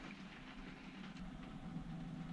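Faint room tone: a low steady hum with light hiss and no distinct sound events.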